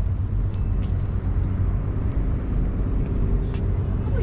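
Steady low outdoor rumble with faint hum, without speech, from an open hilltop terrace above a busy waterway.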